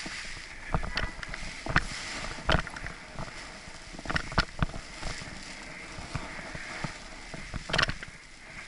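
Wind rushing and buffeting over an action camera's microphone while a paraglider wing is kited overhead. Irregular sharp knocks and snaps break through the rush, about a dozen of them, clustered around the second and fourth seconds and again near the end.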